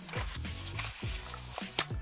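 Background music with a steady beat, over the rustle of a cardboard box and its paper wrapping being opened by hand, with a sharp click near the end.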